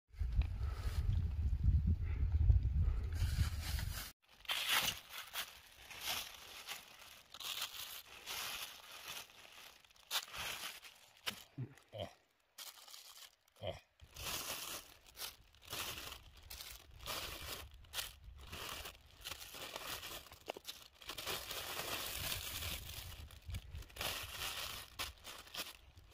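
Wind buffeting the microphone with a low rumble for about the first four seconds. After that, clear plastic sheeting and bags crinkle and rustle in short, irregular crackles as food on them is handled.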